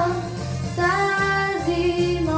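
A young girl singing into a handheld microphone over an instrumental backing track. She holds a long sung note that steps down in pitch near the end.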